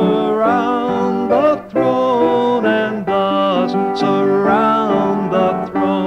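A hymn sung with vibrato over instrumental accompaniment, with a brief break between phrases about a second and a half in.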